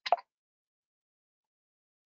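A single short lip smack right at the start, then silence.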